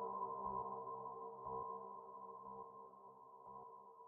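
A held synthesizer chord from the Nexus software synth, ringing on faintly and slowly fading away, with no drums.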